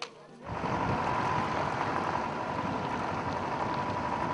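Truck on the move: steady engine and road noise with a thin steady whine through it, starting abruptly about half a second in.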